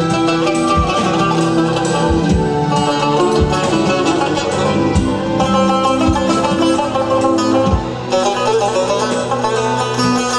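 Azerbaijani tar, a long-necked plucked lute, played with a plectrum: a fast, continuous melody of picked notes, with low thuds underneath.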